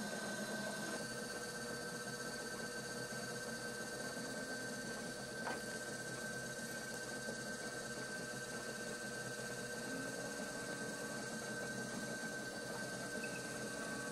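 Electric pottery wheel running at speed with a steady hum and whine, while a loop trimming tool shaves leather-hard clay from the foot of a plate. One small click about five and a half seconds in.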